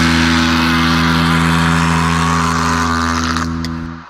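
Black/thrash metal band holding the final distorted chord of a song, a steady sustained chord with a dense, hissing wash above it, which cuts off sharply near the end and leaves a short fading tail.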